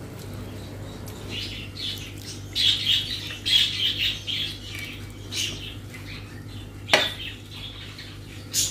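Chicken curry tipped from a glass bowl onto a plate of rice, a run of wet, irregular splatters and slops, most of them in the middle of the stretch. About seven seconds in comes one sharp clink as the glass bowl is set down on the table.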